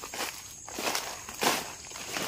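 Footsteps through grass, ferns and leaf litter: about three steps, each a short rustle of brushed vegetation underfoot.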